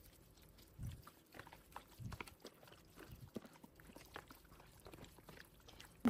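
Faint, irregular wet squelching of a plastic-gloved hand squeezing and mixing raw chicken pieces with yogurt and spices in a plastic tray.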